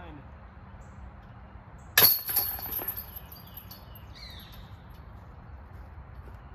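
A putted disc hits the chains of a disc golf basket about two seconds in with a sharp metallic clash, then the chains jangle and ring for under a second as it drops into the basket.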